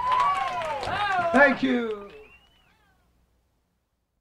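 A person's high, wordless voice wailing, its pitch gliding up and down, for about two seconds before it fades out.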